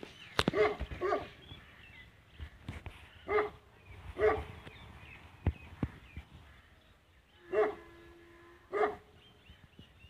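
A dog barking: about seven single barks in three short runs, a second or so apart within each run. A few sharp clicks fall between them.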